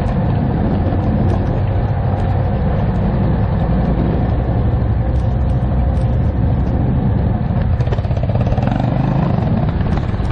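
Quad ATV engine running steadily at low speed on a rough, rocky trail, with scattered small clicks and knocks from stones and the machine.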